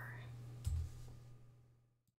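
A single sharp click about two-thirds of a second in, over quiet room tone with a low steady electrical hum; the sound then fades out to complete silence shortly before the end.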